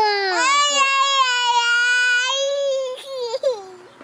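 A toddler girl's long, high-pitched screech, held at a steady pitch for about three seconds, followed by a shorter squeal falling in pitch.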